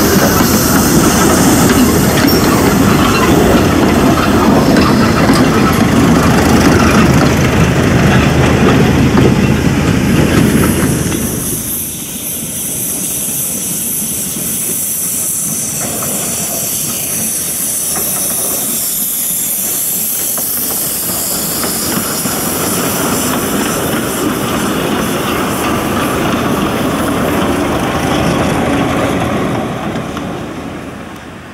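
Narrow-gauge forest railway train rolling past at close range, carriages clattering loudly over the rails. About eleven seconds in the sound drops abruptly to a quieter, more distant train with a steady hiss of steam from the steam locomotive, growing louder again near the end as it draws closer.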